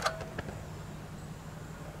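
Mr. Heater Little Buddy propane heater being shut off: a click from its control, a brief squeak and a second click about half a second later, as the flame goes out. A faint steady low hum follows.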